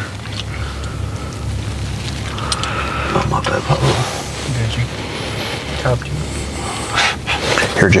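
Indistinct low talk from people in a car, over a steady low hum.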